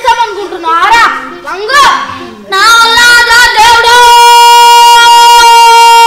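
Children shouting in rising and falling bursts, then about two and a half seconds in a boy lets out one long, loud scream held at a steady pitch for about four seconds.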